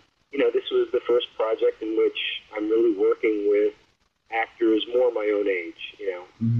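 A person speaking: continuous interview talk, with a brief pause a little before the middle.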